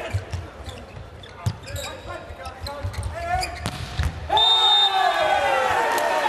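Volleyball rally in an arena: a few sharp strikes of the ball and low thuds, with voices in the hall. About four seconds in, the point ends with a sudden loud, long shout that falls in pitch, with a steady high whistle-like tone over its start.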